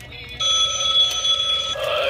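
Animated Halloween antique-telephone prop switching on suddenly about half a second in with a loud, steady electronic ring tone, which gives way near the end to a distorted recorded voice.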